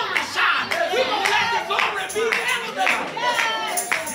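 Congregation clapping, with voices calling out over the applause.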